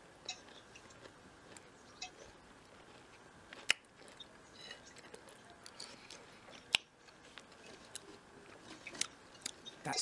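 A person chewing and eating a mouthful of chocolate cake with small mouth and fork sounds, broken by two sharp clicks about four and seven seconds in.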